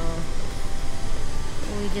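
Steady rushing roar of an 80-foot waterfall plunging into its pool, even and unbroken.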